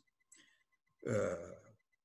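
A man's brief throaty vocal sound, a low hum-like grunt about a second in that fades out, with a faint click shortly before it.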